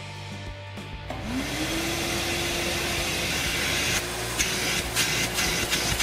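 Shop-Vac wet/dry vacuum switched on about a second in, its motor spinning up to a steady whine and then running, used to draw debris out of an exhaust pipe that is about to be drilled.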